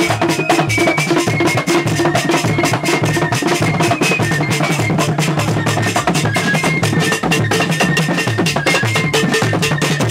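Traditional cultural band playing fast, dense drumming with no break, with a thin high melody line stepping from note to note above it.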